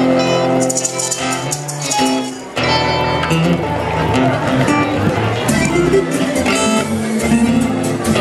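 Live Latin band music: strummed and plucked guitars with voices singing. About two and a half seconds in, the sound dips briefly, then comes back fuller and heavier in the low end.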